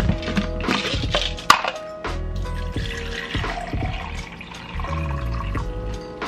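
Background music with a beat. For a couple of seconds midway, water pours into a plastic shaker bottle.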